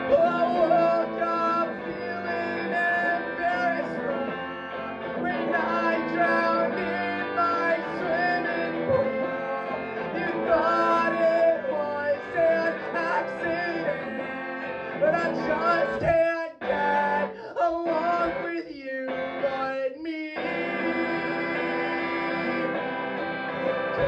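Electric guitar strumming sustained chords, with a run of short stop-start breaks about two-thirds of the way in before the chords carry on.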